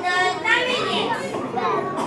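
A young girl's high-pitched voice through a microphone, gliding up and down in pitch.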